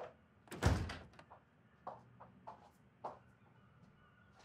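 An interior door closing with a thud about half a second in, followed by a few spaced footsteps across the floor.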